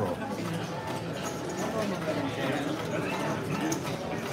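Background chatter in a busy poker room: several voices talking at a distance, none close to the microphone.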